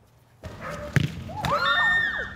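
A football kicked hard with a single thump about a second in, followed by children's voices shouting as the shot goes at goal.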